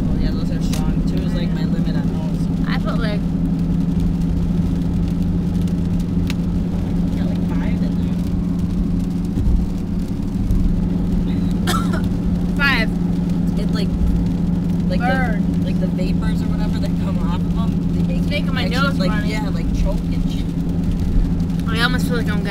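Steady low drone of engine and road noise inside a moving Jeep's cabin. Brief bits of voice sound come and go over it.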